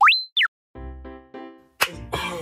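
A cartoon-style sound effect: a quick whistle sliding up in pitch, held a moment, then sliding down, followed by a short jingle of a few sustained notes.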